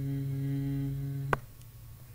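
A man's voice holding a steady, level hum on one pitch, like a drawn-out "hmm" while thinking, which stops about a second and a half in and is followed by a single sharp click.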